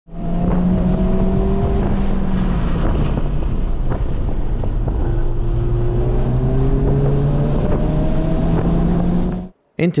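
Honda Civic Type R FL5's turbocharged four-cylinder engine heard from inside the cabin, pulling hard with its pitch climbing, dropping back once about two seconds in and then rising again in a long pull. It cuts off abruptly just before the end.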